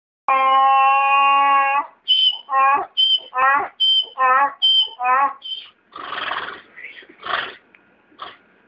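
Donkey braying. One long held note comes first, then a run of hee-haws at about two a second, each a short high note followed by a lower falling one. The bray ends in rough, wheezy breaths.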